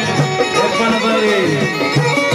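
Live Balochi folk music: a benju (keyed zither) plays a gliding melody over a steady drum beat.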